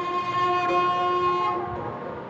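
A sarangi bowed on one long held note that fades away near the end.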